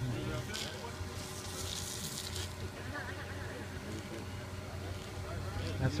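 Indistinct voices of people talking in the background over a steady low hum, with a brief crackling hiss from about one to two and a half seconds in.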